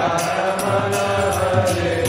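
Voices chanting a devotional mantra over a steady beat of hand cymbals struck about twice a second.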